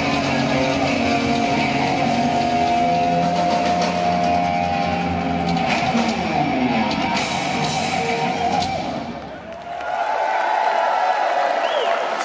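Live hard rock band, two electric guitars and drums, holding out long sustained notes and chords. The music dips briefly about nine and a half seconds in, and crowd cheering follows near the end.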